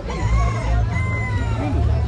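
A rooster crowing once: one long call that rises at the start and is held for about a second, over the babble of a crowd.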